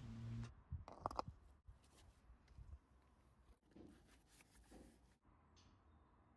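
Near silence, with a few faint clicks and light handling sounds while oil is being put into the engine through a funnel.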